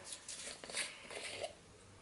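Faint handling sounds of a small plastic craft-paint bottle as its cap is twisted off: a few soft scrapes and clicks in the first second and a half.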